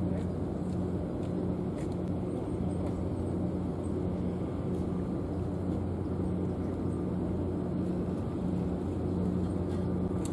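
A steady low mechanical hum, engine-like, with a few faint ticks over it.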